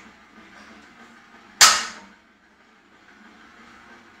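Iron plates of a loaded barbell set down on the gym floor about one and a half seconds in, with a single sharp clang that rings briefly. Low gym room noise before and after.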